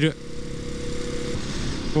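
Motorcycle engine running steadily while riding along a road, with road and wind noise.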